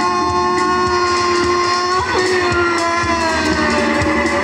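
Live music from a voice-and-keyboard trio: a long sustained note or chord that moves to a new pitch about halfway through, then sags slightly lower.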